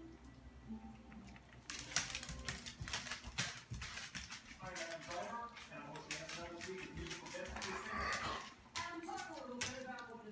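Ferret crunching dry dog kibble from a plastic bowl: a rapid, irregular run of sharp clicks and crunches starting about two seconds in, with a voice in the background.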